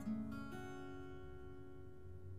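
Martin acoustic guitar playing the song's closing notes: a few single notes picked in the first half-second, then the final chord left ringing and slowly fading.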